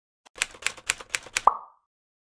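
Logo-animation sound effect: a quick run of five clicky pops, about four a second, then a last pop with a short ringing tone that dies away at once.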